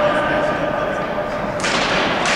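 Ice hockey faceoff: voices and a faint steady tone, then about a second and a half in a sudden sharp scrape and thud of sticks and skates on the ice as play starts.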